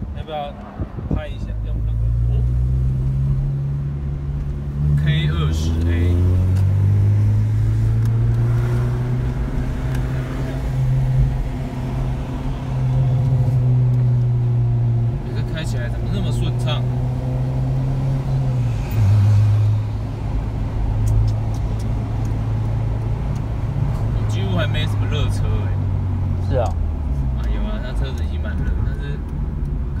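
Honda K20A four-cylinder engine of an Integra DC5 / RSX Type S with an aftermarket exhaust, heard from inside the cabin while driving: a steady, loud engine note whose pitch rises and falls in steps as the revs change.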